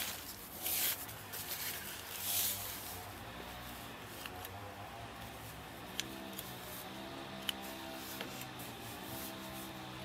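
Hands rubbing and smoothing a sheet of pastry draped over a casserole dish: two soft rustling rubs in the first few seconds, then quieter handling with a few faint clicks.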